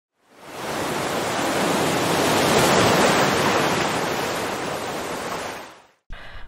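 Ocean-surf sound effect: a single wash of noise that swells up and fades away.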